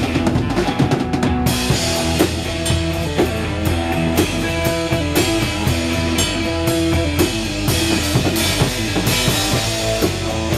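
Live rock and roll band playing an instrumental passage, the drum kit to the fore with bass drum and snare hits in a steady beat over bass and electric guitar.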